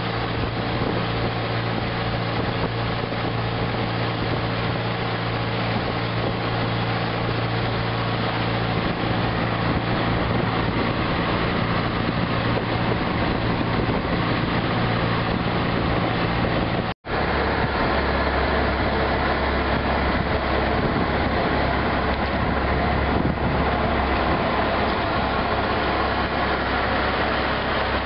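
Outrigger boat's engine running steadily under way across open water, with a broad rush of wind and water behind it. After a brief dropout about two-thirds of the way through, the engine hum sits lower.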